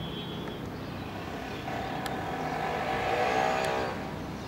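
A motor vehicle driving past in the street: its engine note swells about two seconds in, drops in pitch as it goes by, and stops abruptly near the end, over a steady hum of traffic.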